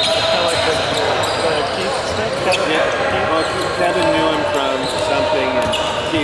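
A basketball bouncing a few times on a hardwood gym floor, over background chatter of spectators' voices in a large echoing gym.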